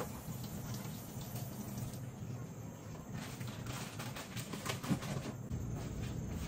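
Vegetables and kitchenware being handled at a kitchen sink: a run of light knocks and clatter in the second half, one sharper knock near the end, over a steady low hum.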